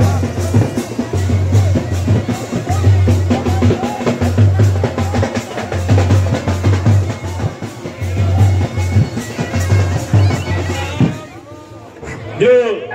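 Chholiya band music: drums beating a steady, heavy rhythm under a wavering wind-instrument melody, dying down a little before the end.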